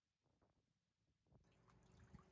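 Near silence, with faint outdoor background noise fading in about a second in.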